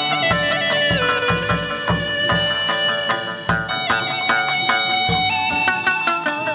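Chầu văn ritual band playing instrumental music: a sustained, reedy melody line that slides between held notes, over irregular drum strokes.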